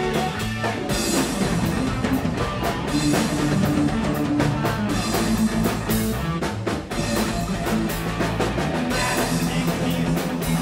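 Live rock band playing: electric bass, electric guitar and drum kit together, with steady drum hits under moving bass notes.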